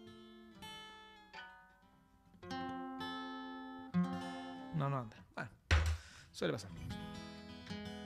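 Acoustic guitar being plucked, playing a sparse introduction of single notes and chords that are left to ring. In the second half come a few short vocal sounds from the player and a brief thump.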